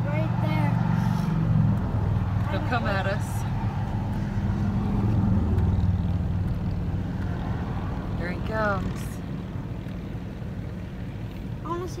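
Steady low hum of a car's engine running, heard from inside the cabin, with a few short bursts of voices.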